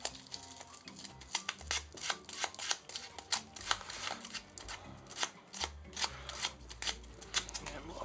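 Sandpaper rubbed in short, uneven strokes over a yellow spray-painted watch strap, a run of scratchy rasps as the fresh paint is worn back. Background music with a low bass line plays underneath.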